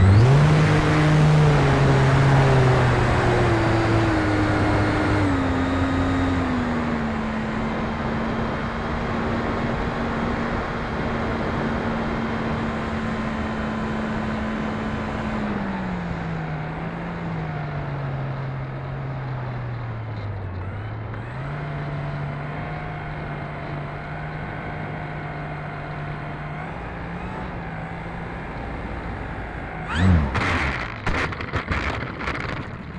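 Electric motor and propeller of an E-flite Turbo Timber RC plane, heard from an onboard camera over a steady rush of air. The motor's tone jumps up at the start, slides down over several seconds and holds steady, sags about halfway through, then steps back up and holds.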